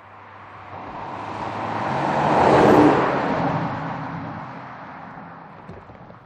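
Porsche Panamera 4 E-Hybrid Sport Turismo driving past: the engine and tyre noise builds to a peak a little under three seconds in, then fades away, its low hum dropping in pitch as it passes.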